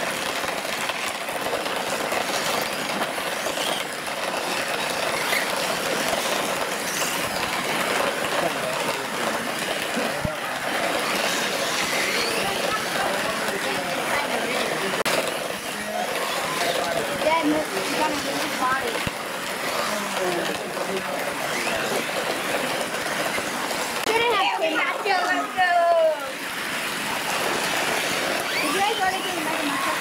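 Radio-controlled monster trucks driving and tumbling on a muddy dirt track, their motors whining in short bursts, under a steady murmur of indistinct voices.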